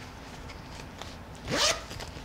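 A zipper on a fabric tote bag being pulled open in one quick, rising rasp about one and a half seconds in, after a few faint handling clicks.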